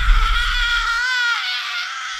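An eerie, high-pitched wavering wail in a horror-style meme soundtrack, its pitch swelling up about a second in and then sinking. A low rumble runs under it and cuts out about halfway.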